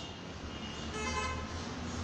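A short vehicle-horn honk, about half a second long, about a second in, over a steady low hum.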